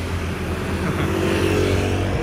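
Motor vehicle engine running amid street traffic: a steady low hum, with an engine note rising slightly in the second half.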